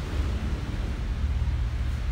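Steady low rumble with a faint hiss underneath, unchanging throughout.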